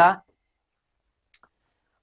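A man's voice finishing a short spoken word, then near silence broken by a single faint click about one and a half seconds in.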